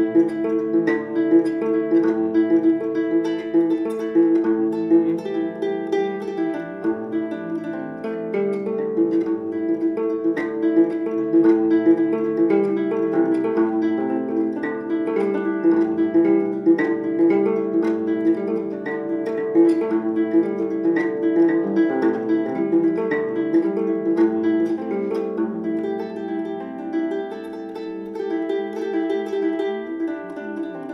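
Kamele ngoni, a West African harp with a skin-covered gourd body, played solo: plucked notes in a repeating melodic pattern.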